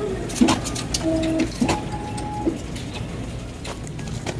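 Office copier printing, with a low steady hum, sharp clicks and a few short electronic beeps in the first half.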